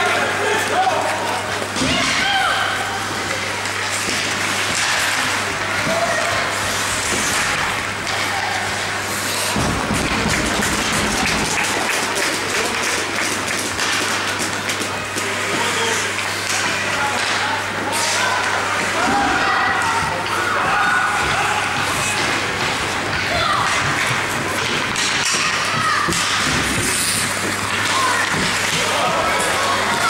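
Ice hockey play in an indoor rink: scattered knocks and thuds of sticks, puck and boards, with voices calling out over a steady low hum of the arena.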